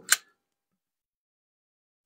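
Manual hand-held staple gun making one short, sharp click at the very start.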